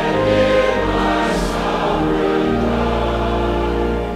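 A congregation singing a hymn together over an instrumental accompaniment that holds long, steady low notes.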